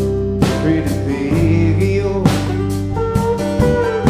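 Live band playing an instrumental passage with no vocals: electric and acoustic guitars over a drum kit, with steady drum strikes and a few bent guitar notes near the end.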